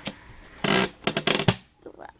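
Paper notebook being handled: a burst of rustling about half a second in, then a quick run of clicks and rustles that stops about a second and a half in.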